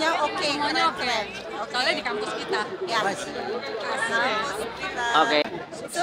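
Only speech: people talking, with other voices chattering around them.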